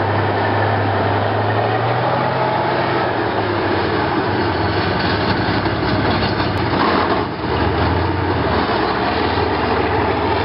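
T-55 tank's V12 diesel engine running as the tank drives past on its tracks, a steady low engine note under dense mechanical noise, with a brief dip in loudness about seven seconds in as the engine note shifts.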